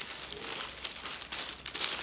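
Paper takeaway burger wrappers crinkling and rustling in a run of short rustles as they are unwrapped by hand to check the burgers.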